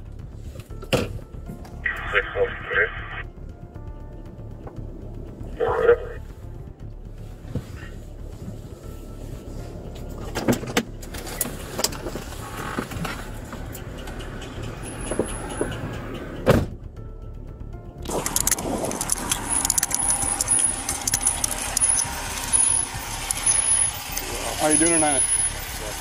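Clicks, knocks and rubbing on a police body camera during a traffic stop, with short noisy bursts about two and six seconds in. From about eighteen seconds in, a louder steady rush of outdoor road noise comes up, and a voice starts near the end.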